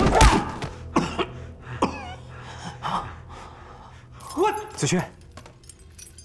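A heavy thud as one man grabs and shoves another in a scuffle, followed by short, strained grunts and breaths from the men struggling.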